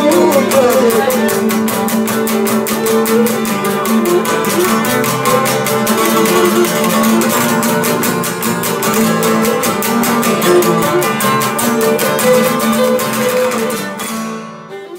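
Cretan lyra and two laouta playing a Cretan tune: the laouta strum a fast, even rhythm under the bowed lyra melody.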